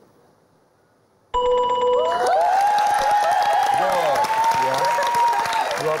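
Game-show answer-board chime: after a moment of near silence, a bright electronic ding rings out about a second and a half in, marking a correct answer revealed on the board. It is followed at once by a studio audience cheering and applauding, with whoops, which carries on to the end.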